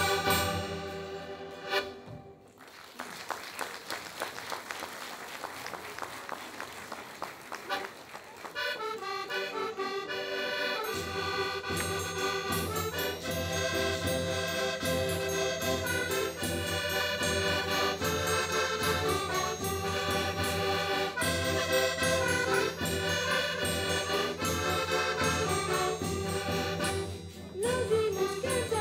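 Accordion music from a Portuguese folk ensemble. A tune ends in the first two seconds, and after a few seconds of lower noise the accordions start about eight seconds in. The rest of the band, with bass drum and guitars, joins about three seconds later and plays on steadily.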